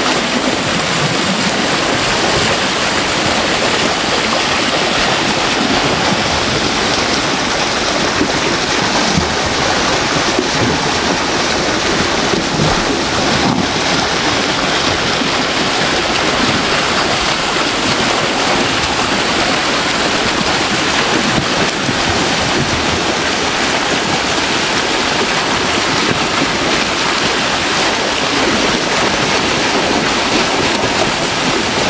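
Water spilling over a small weir into a concrete channel and churning in the pool below: a steady, loud rush. The stream is running high with meltwater.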